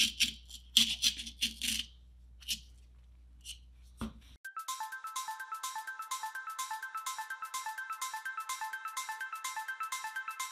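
A craft knife scratches and crunches through expanding foam gap filler in short strokes, a cluster of four and then two single ones. About four seconds in the sound cuts to background music of quick, evenly repeated plucked or mallet-like notes.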